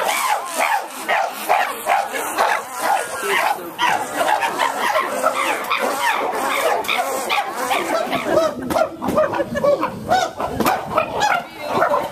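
Chimpanzees calling: a continuous run of short, overlapping hoots and barks from several animals.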